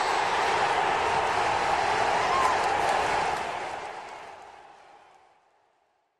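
Tail of an end-card sound effect: a steady hissing wash with a faint held tone that fades away from about three seconds in, dying out to silence near the end.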